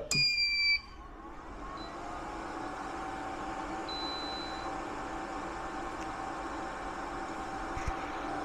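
TOPBULL 2000 W pure sine wave inverter powering up: a single high beep lasting under a second, then its two cooling fans spinning up over a couple of seconds and running steadily at full speed.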